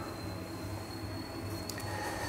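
Steady low hum with a faint, thin high-pitched whine that rises very slowly, and a single light click near the end.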